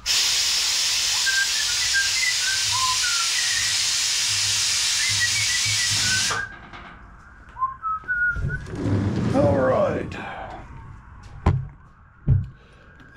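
Mower lift table being lowered, with a loud, steady hiss of escaping air that starts abruptly and cuts off about six seconds later. A short wavering, voice-like sound follows a few seconds after.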